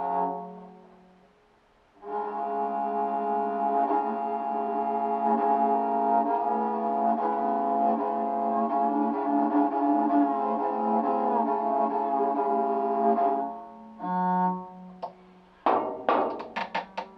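A newly built talharpa, a Nordic bowed lyre, played with a bow: a note dies away, and after a pause of about two seconds a steady drone string sounds under a bowed melody for about eleven seconds, then stops. One more short bowed note follows near the end.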